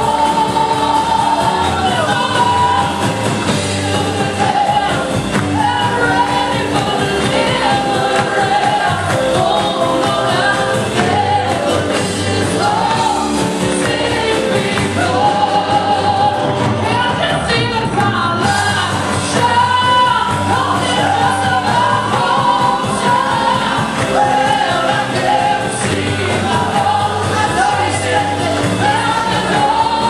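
A woman singing a sustained, bending melody into a microphone, amplified through the PA, with a live band of keyboard and drums playing along.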